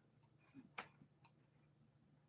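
Near silence: room tone with a few faint short clicks.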